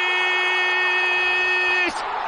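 A football commentator's long held shout on one steady pitch as a goal goes in, over stadium crowd noise; it breaks off near the end.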